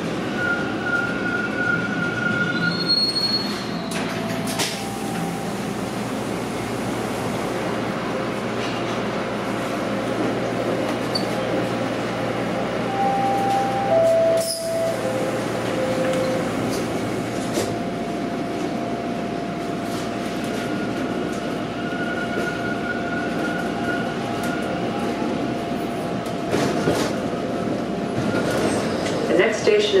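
Bombardier T1 subway car heard from inside as it runs along the track: a steady rumble of wheels and running gear, with held whining tones, one of them long and steady through the second half.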